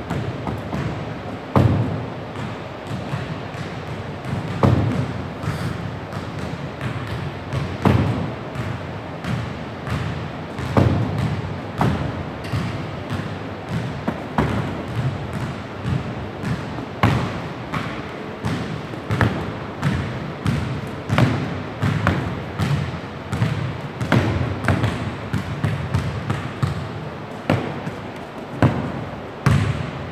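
Medicine balls and basketballs thudding and bouncing again and again as they are tossed up, caught and dropped onto a wooden gym floor. The thuds overlap irregularly several times a second, with a louder one every second or two.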